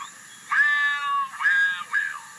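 Two high-pitched, meow-like cat cries from a cartoon soundtrack, played on a TV and recorded off the screen. The first lasts about a second and falls at its end; the second is shorter.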